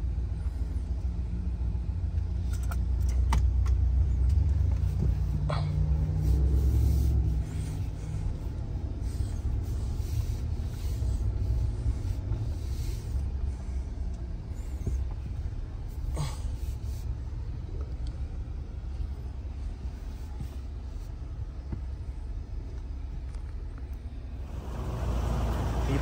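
Low, steady rumble heard inside the cabin of a 2024 Cadillac Escalade with its engine running, a little louder for a few seconds early on, with a few faint clicks.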